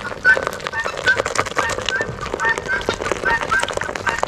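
Beer poured from a can into a bowl of beaten eggs, with a fizzing, splashing crackle, under short repeated bird chirps at about three a second.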